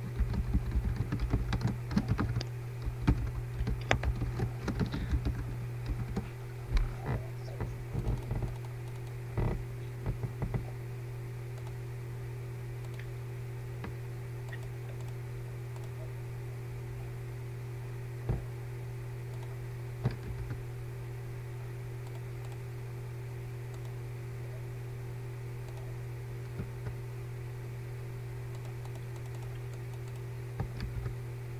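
Typing on a computer keyboard, a quick run of key clicks for about the first ten seconds, then a few single clicks, over a steady low electrical hum.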